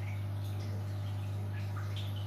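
Aquarium air stone bubbling, with small scattered drips and pops from the bubbles at the water surface, over a steady low hum from the tank's equipment.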